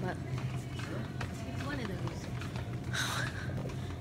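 Supermarket room tone: a steady low hum with faint voices in the background, and a brief rustle of the phone being handled about three seconds in.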